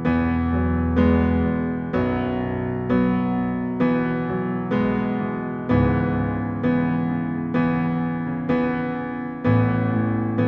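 Korg SV1 stage piano played with both hands: sustained chords struck about once a second, each ringing out and fading, over left-hand bass octaves, moving through an A–E–Bsus–C#m progression.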